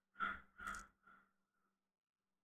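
A man sighing close to the microphone: two breathy exhalations about half a second apart, trailing off, over a faint steady hum.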